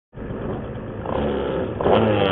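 125cc two-stroke shifter kart engine running at low revs, heard close up. It gets louder about a second in, and the revs rise near the end.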